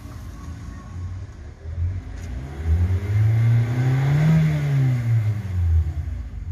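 Kia Sportage engine idling, then revved once. The pitch climbs to a peak about four seconds in and falls back to idle near the end. The engine has just been repaired for a cylinder 4 misfire and shows no fault codes.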